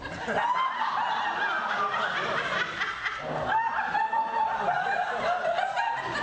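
High-pitched laughter, drawn out and wavering in pitch, with a short break about three seconds in.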